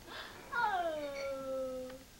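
A baby's long whiny cry, starting about half a second in, falling in pitch and then holding steady until it stops abruptly near the end.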